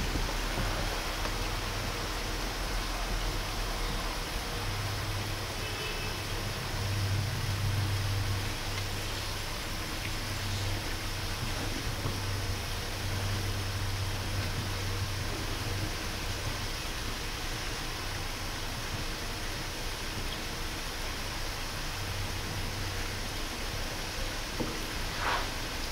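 Steady rushing noise with a low hum underneath.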